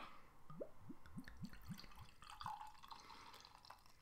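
Beer poured from a glass bottle into a glass, glugging from the bottle's neck: a quick run of about eight faint glugs, each rising in pitch, followed by a softer pouring hiss that fades out.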